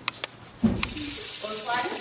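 A loud, steady hiss played as a snake sound effect, starting abruptly with a low thump about half a second in. Voices sound faintly underneath.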